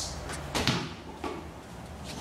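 A few short knocks and thumps, about three in two seconds, the clearest one just over half a second in.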